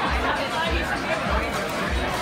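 Restaurant dining-room din: many diners' overlapping chatter over background music with a steady deep bass beat, a little under two beats a second.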